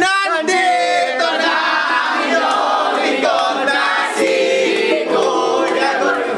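A group of young men and women singing loudly together, with a ukulele strummed along.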